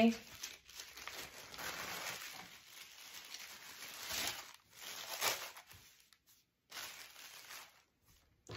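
Tissue-paper sewing pattern rustling and crinkling as it is lifted off and moved aside, with soft handling of the fabric. The rustles come in uneven bursts, loudest about four and five seconds in.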